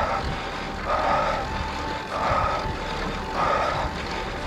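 A road cyclist's heavy, rhythmic breathing during a hard climb, one breath about every 1.2 seconds, over a steady low rumble of wind and road noise on the microphone.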